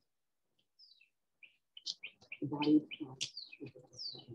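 A songbird singing a quick run of short high chirps and downward-slurring notes, starting about a second in and busiest in the second half.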